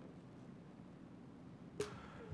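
Quiet room tone picked up by the meeting microphones, with one short click near the end.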